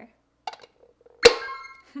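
Two plastic halves of a toy ball snapped together: one sharp click a little over a second in, followed by a brief ringing tail.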